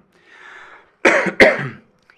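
A man takes a short breath in, then coughs twice in quick succession about a second in.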